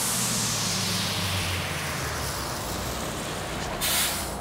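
A large tour coach driving past, its engine hum and road noise dropping slightly in pitch as it goes by, with a short, loud burst of hiss near the end.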